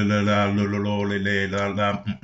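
A low, steady chant-like note, a single pitch held without a break, in the manner of a mantra.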